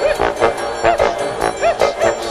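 Instrumental music with a steady beat and short notes that bend up and down in pitch.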